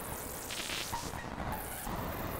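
Make Noise 0-Coast synthesizer patch making a buzzing, noisy electronic tone with a couple of short high bleeps about a second in. It is run through an octave-up-and-down harmonizer, hall reverb and reverse delay.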